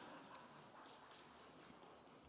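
Near silence: quiet room tone with a couple of faint clicks.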